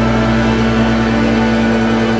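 Background music: a sustained held note over a low drone.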